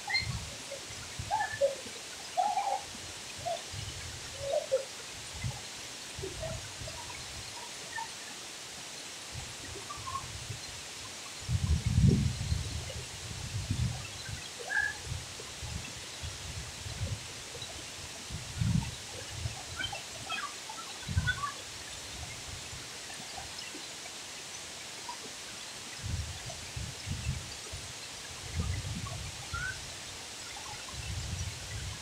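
Steady rush of a tall waterfall pouring into a plunge pool, with scattered short faint calls over it and uneven low rumbles, the strongest about twelve seconds in.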